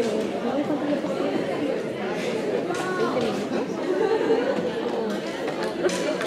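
Many voices chatting at once in a lecture hall, an overlapping hubbub with no single speaker standing out.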